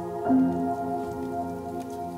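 Calm instrumental piano music: a soft sustained chord rings and fades, with a new chord struck about a quarter second in.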